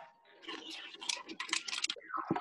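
Typing on a computer keyboard: a quick run of irregular clicks starting about half a second in.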